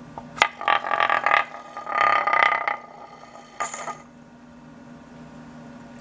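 Small wooden tippe top spinning on a turned wooden platter: a sharp tick, then two bursts of scraping rattle as it runs on the wood and flips up onto its stem, and a short click near four seconds, after which only a faint low hum is left.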